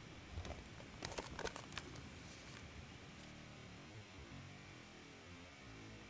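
Faint playback of a clip's own audio, hair swishing and brushing against the microphone: a few soft clicks in the first two seconds, then a faint warbly, digitized tone as the section slows to quarter speed with its audio pitch maintained.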